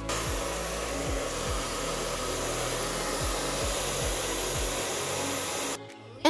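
Hair dryer blowing steadily, drying the first layer of watered-down fabric paint on a shirt; it starts suddenly and cuts off abruptly just before the end, with soft background music underneath.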